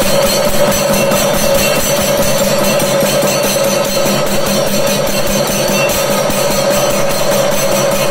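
Kerala temple percussion: drums and small cymbals keeping a fast, even beat over a steady held tone.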